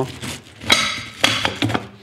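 Cast-aluminium ham press having its lid pushed down against its coil springs, the lid clamp catching on the notched side bars with a few sharp metallic clacks and scrapes.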